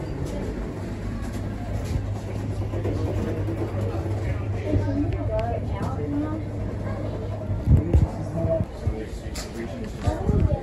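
A steady low hum inside a railway carriage, with faint voices in the background. A few heavy thumps about eight seconds in are the loudest sounds.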